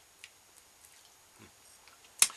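Near silence: faint room tone with a few soft, brief clicks.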